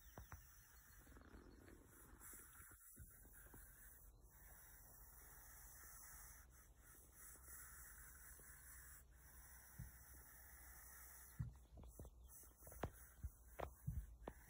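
Near silence: faint steady outdoor background, with a few short soft knocks or clicks in the last couple of seconds.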